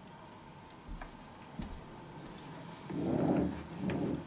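Soft rustling of a cloth towel being handled around a reclining person's head, in two swells about three and four seconds in, with a few faint clicks before them.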